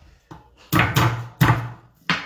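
Three heavy thumps of a knife striking a wooden cutting board, with a lighter tap just before them.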